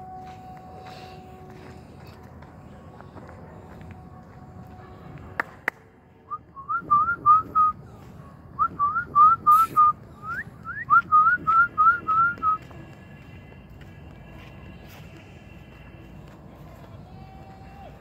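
Whistling: a run of short notes, each sliding up in pitch, about three a second in three quick bursts, starting about six seconds in and stopping about halfway through the clip.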